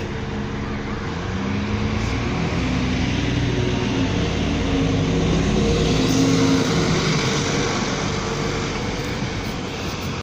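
Alexander Dennis Enviro 400 double-decker bus pulling away from a stop, its engine note rising as it accelerates and at its loudest about six seconds in, then easing as the bus moves off.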